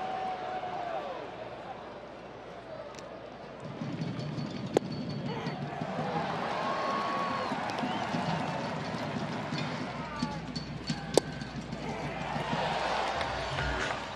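Ballpark crowd noise with scattered voices calling out, broken by two sharp cracks, about five and eleven seconds in.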